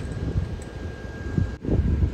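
Wind buffeting the microphone, an uneven low rumble, with a faint steady high tone that cuts off abruptly near the end.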